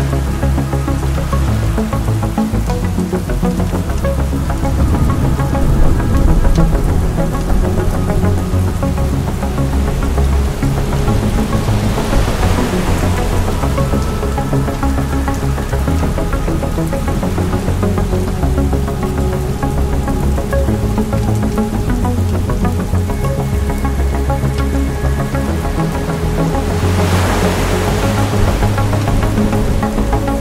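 Dark ambient synth music: sustained low drones and held tones, with a layer of rain noise. A broad hiss swells up and fades twice, about twelve seconds in and near the end.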